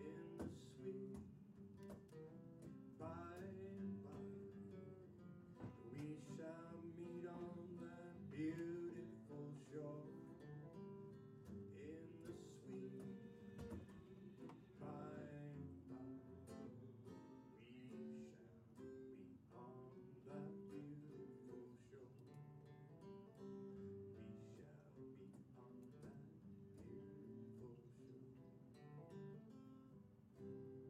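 Acoustic guitar strummed steadily, with a man singing over it in stretches during the first half.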